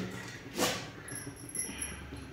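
A single short utensil sound about half a second in, over the faint background of a kadhai of gravy simmering on a lit gas burner.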